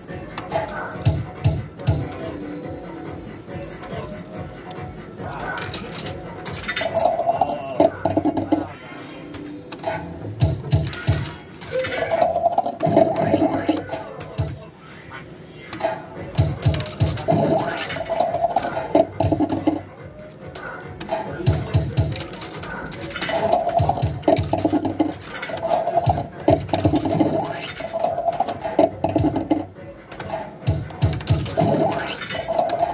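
Mazooma 'Crazy Fruits' fruit machine playing its electronic jingles and reel sound effects, with recurring clusters of short low thuds and tones every couple of seconds.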